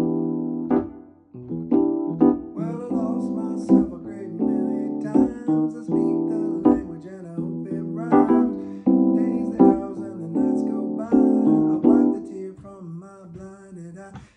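Digital piano playing a song's intro: sustained chords struck one after another, with a brief drop-out about a second in and another near the end.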